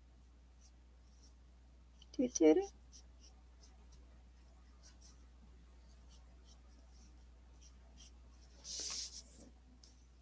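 Felt-tip marker nib rubbing across paper in faint, short scratchy strokes while colouring, with a brief hiss near nine seconds. A short vocal sound comes about two seconds in.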